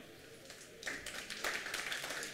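Audience applause starting about a second in: many overlapping hand claps.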